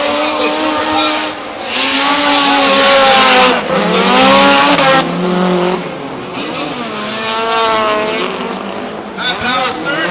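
Two drift cars running in tandem, their engines revving up and down hard as they slide, with tyre squeal. The loudest stretch comes about two seconds in and lasts roughly three seconds.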